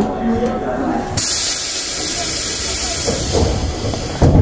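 Tobu 8000 series train's compressed-air system venting: a steady whine is cut off about a second in by a sudden loud hiss of air, which lasts about three seconds.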